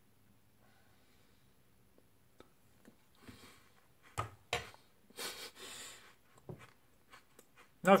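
Faint chewing of a mouthful of alanine amino-acid powder: scattered soft mouth clicks and smacks, with a few louder noisy bursts in the middle.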